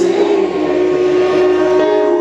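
Live keyboard and voice: a long held sung note over sustained chords, the pitch steady.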